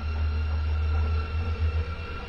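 Deep, steady low drone of dark background music, with faint steady tones above it.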